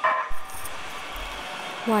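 Metro Gold Line light rail train passing a street crossing, a steady even noise of the train running by. There is a brief low knock shortly after the start.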